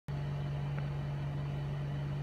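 A steady low hum with faint background noise, unchanging throughout.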